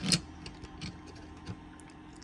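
Quarter-inch hand ratchet handled and turned: a sharp metal clack right at the start, then a scatter of light ratchet ticks. The ratchet is one its owner thinks may need greasing.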